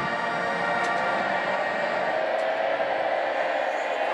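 Marching band holding one long sustained chord on brass, its lower notes dropping away at the start.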